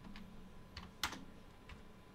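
A few faint computer-keyboard keystrokes, typed slowly and spaced apart, the loudest single key about halfway through.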